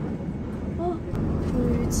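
Steady low rumble of an airliner cabin parked on the ground during de-icing, with faint voices in the background.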